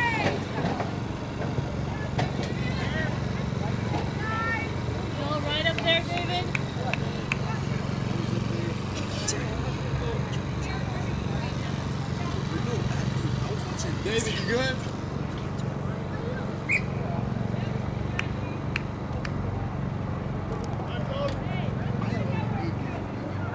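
Distant, indistinct voices of players and spectators calling across an open field over a steady low hum.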